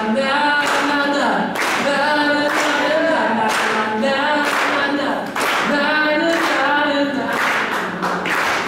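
Voices singing unaccompanied at a live concert, with hand claps on the beat about once a second and no guitar playing.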